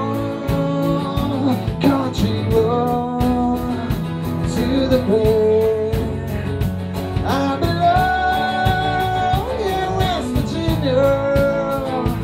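Live rock band playing a country-tinged rock song: electric guitars, bass and drums on a steady beat, with a lead melody of long held notes that bend up and down.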